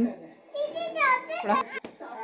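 A young child's voice: short wordless vocal sounds, with a couple of light clicks near the end.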